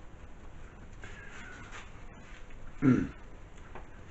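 Low, steady room noise, then near the end a man's single drawn-out word, "Well", falling in pitch.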